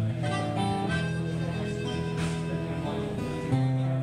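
Blues harmonica playing held, bending notes over strummed acoustic guitar in an instrumental break of the song.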